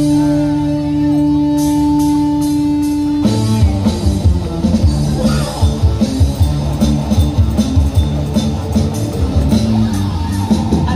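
Live rock band with drum kit, bass and guitars: a chord is held steadily for about three seconds, then the full band comes in with drums on a steady beat.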